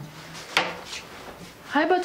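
A short sharp knock a little after the start, followed by a voice near the end.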